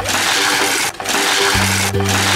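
Die-cast toy cars rattling fast down a plastic playset launcher track, a loud, dense rattle in two runs with a short break just before the middle, over background music.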